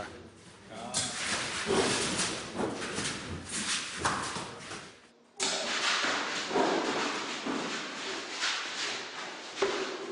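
A person laughs briefly amid noisy movement echoing in a concrete animal pen. The sound changes abruptly about five seconds in.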